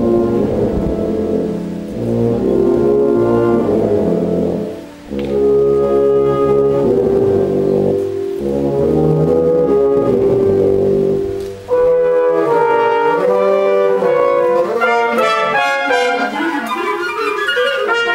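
A wind band of brass and woodwinds playing a concert piece: full, sustained low brass chords, then about twelve seconds in the music shifts to higher, quicker-moving lines.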